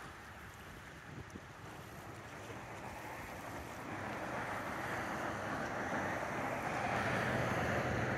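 Road traffic noise from a vehicle approaching on the highway: a steady tyre and engine rush that grows louder through the second half, over light wind on the microphone.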